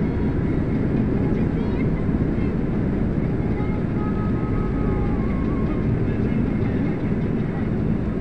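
Steady low road and engine noise heard from inside a moving vehicle travelling along a city street.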